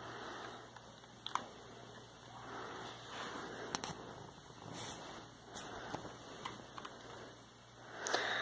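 Faint handling noise as a LEGO brick pistol is turned over in the hand above a bedsheet: soft rustling swells with a few small, sharp clicks.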